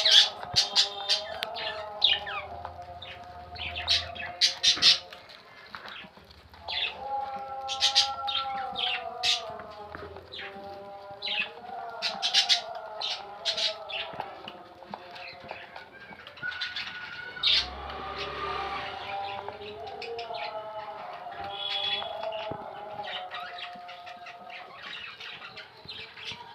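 A budgerigar bathing in a bucket of water, splashing and flapping its wings in repeated quick bursts, with some chirps.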